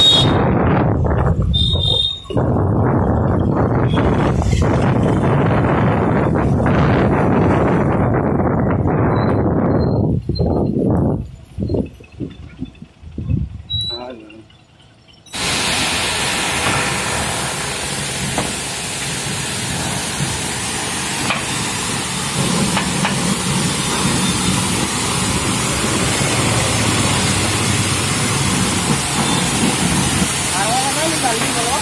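Wind buffeting the microphone and road noise from a moving vehicle, breaking up about 11 seconds in. From about 15 seconds in, a pressure washer's jet hisses steadily as it blasts caked mud off a Mahindra 475 DI tractor's steel cage wheel.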